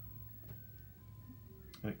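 Thin electronic beeps hopping from one pitch to another out of a crashed Commodore 64's sound output, over a steady low hum. The machine crashes when a twisted PLA socket is released, typical of a bad contact in that socket.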